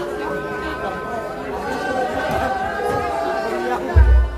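Several people talking at once in overlapping chatter, a crowd of voices with no one voice standing out.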